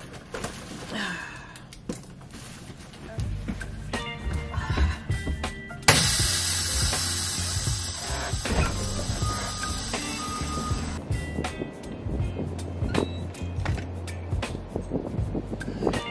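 Background music with a steady deep beat comes in about three seconds in. From about six seconds a loud hiss sits over it for about five seconds, then stops suddenly.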